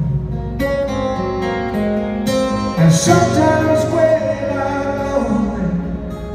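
Steel-string acoustic guitar played solo in an instrumental break of a country ballad, picked melody notes ringing over bass notes, starting about half a second in.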